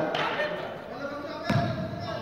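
Basketball bouncing on the court floor: two bounces about a second and a half apart, the second the louder, with voices in the hall behind.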